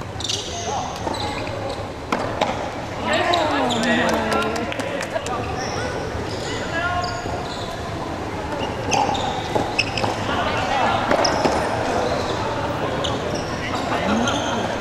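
Sharp hits of rackets striking a ball in a doubles rally on a hardwood gym floor, mixed with short high squeaks of sneakers on the floor. Players' voices call out during and between points.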